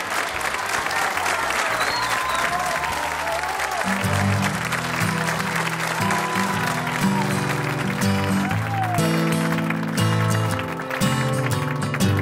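Studio audience applauding and cheering. About four seconds in, a live band begins the song's intro with low bass notes, and a steady rhythm of sharp strokes joins from about eight seconds in.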